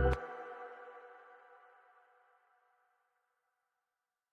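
End of a melodic trap piano beat: the bass stops abruptly a moment in, and a last piano chord rings on, fading out over about two seconds.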